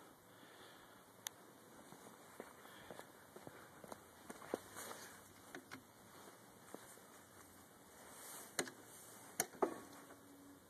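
Faint scattered clicks, light knocks and footsteps of someone moving around and handling a motorcycle that is not running, with a few sharper clicks near the end.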